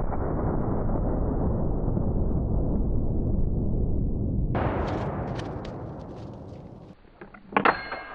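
Slowed-down boom of a .500 Nitro Express double rifle shot tearing into ballistic gel, stretched into a deep, drawn-out rumble that fades away over several seconds. A few light clicks follow near the end.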